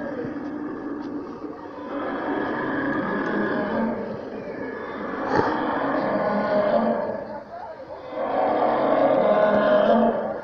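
Recorded dinosaur roars from the park's animatronic figures: several long, drawn-out low calls, the loudest near the end, with people's voices around them.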